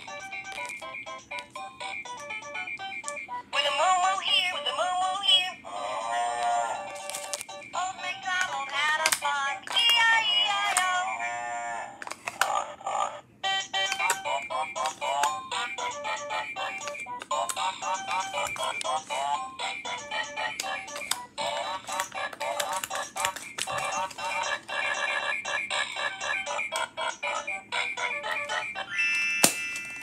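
VTech Rhyme and Discover Book toy playing electronic nursery-rhyme tunes with synthesized sung verses through its small speaker, one short song after another with brief breaks. The sound is thin and tinny, with almost no bass.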